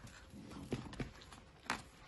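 A person chewing a mouthful of chicken sandwich, faint, with three soft wet mouth clicks, the loudest a little before the end.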